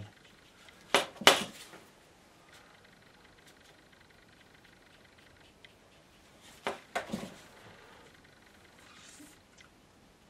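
Paintbrush clinking against a hard water pot: two sharp clinks about a second in, then three more close together near seven seconds.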